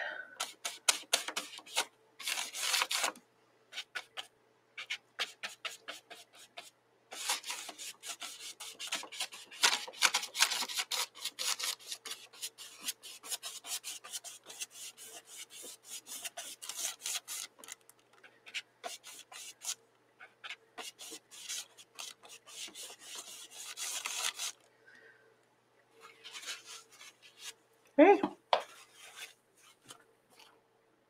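A paintbrush scratching and scrubbing acrylic paint onto a painting surface in quick, rough dry-brush strokes. The strokes come in runs with pauses between them, the longest run lasting more than fifteen seconds.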